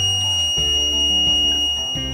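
A steady, high-pitched electronic beep from a Hamilton Beach programmable slow cooker's control panel, held for the whole moment, as the cooker is set to cook on high. Background music plays under it.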